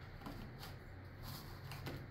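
A paintbrush dabbing acrylic paint onto a stretched canvas, making a few faint light ticks over a low steady hum.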